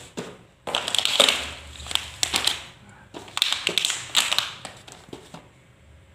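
Cardboard shipping box and plastic product packaging being handled: rustling, crinkling and light taps in several short bursts as items are lifted out and set down.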